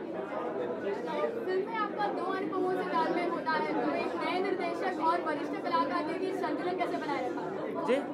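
Indistinct off-microphone speech and chatter in a large room, too faint to make out: a question asked from across the room.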